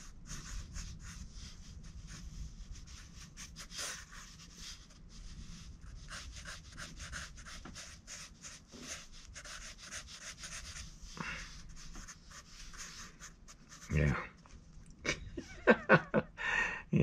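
Felt-tip marker scribbling fast on sketchbook paper: a run of quick, scratchy strokes as loose gesture lines are drawn. A short breath near the end.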